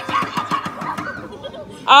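Children's excited voices with a quick run of knocks and clatter in the first second: folding chairs jostled as children scramble for seats in a game of musical chairs.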